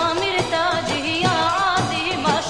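Mizrahi Jewish song: a solo voice sings a wavering, ornamented melody over a regular percussion beat and instrumental backing.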